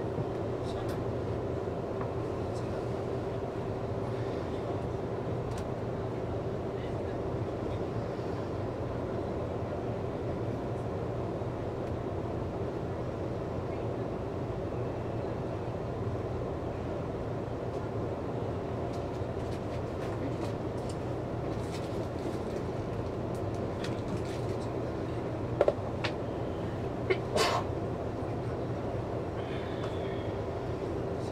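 Nankai 30000 series electric train standing stopped at a platform, its onboard equipment giving a steady hum with one constant tone. A few short sharp clicks come near the end.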